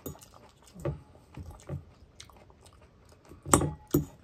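A person chewing a mouthful of raw salad close to the microphone: a few soft, irregular chews, then a louder crunching bite near the end.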